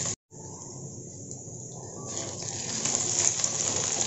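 Okra and potato pieces frying in oil in a metal kadhai over a high flame: a steady sizzle. The sound cuts out completely for a moment just after the start, returns faint and dull, and builds back to a full sizzle over the second half.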